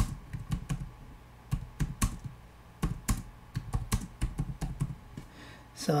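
Typing on a computer keyboard: irregular keystroke clicks in short runs, with brief pauses between them.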